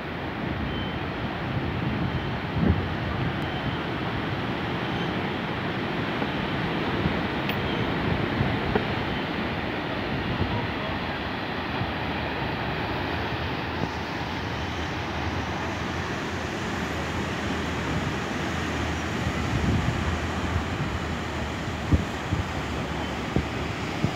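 Steady rush of Atlantic surf breaking on the rocky shore below, with wind buffeting the microphone and a few brief bumps, the loudest about three seconds in and near the end.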